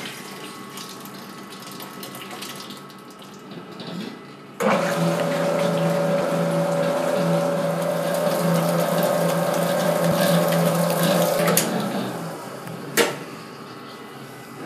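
SPAR commercial planetary mixer switching on abruptly and running with a loud, steady motor whir as its wire whisk beats cake batter. It then switches off and winds down, followed by a single sharp click near the end.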